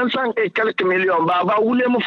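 Speech only: a person talking without pause.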